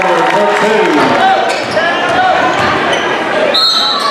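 Basketball game in a gymnasium: a ball bouncing on the hardwood and crowd voices throughout. Near the end a referee's whistle blows once, briefly.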